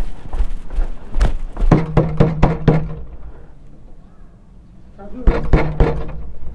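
A man coughing in two fits of sharp, voiced coughs, the first about one to three seconds in and the second near the end.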